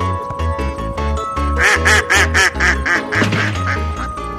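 Mallard quacking: a quick run of about nine loud quacks, about four a second, starting a little over a second and a half in, over background music with a steady bass beat.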